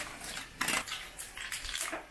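Wire whisk clinking and scraping against a stainless steel bowl while mixing curd rice, a run of irregular light metallic clicks.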